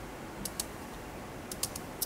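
Computer mouse clicking quietly: a pair of clicks about half a second in, then a quick run of three about a second later.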